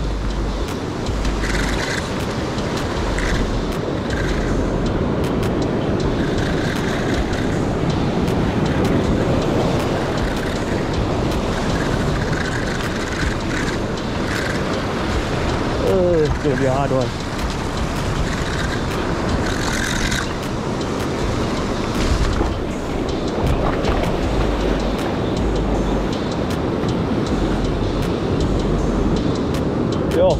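Ocean surf washing and breaking over rocks, a steady rushing noise without pauses.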